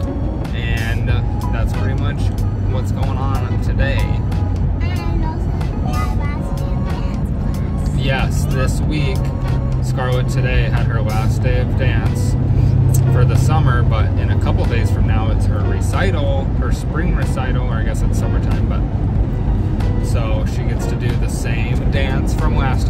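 Steady road and engine drone inside a moving car's cabin, under background music and a man talking.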